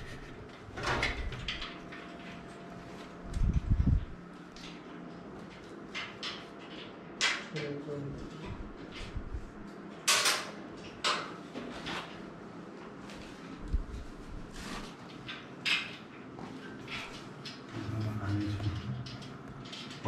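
Scattered clicks, knocks and scrapes of network equipment being handled and slid into a metal server rack, with a dull thump about three seconds in, under low, indistinct voices.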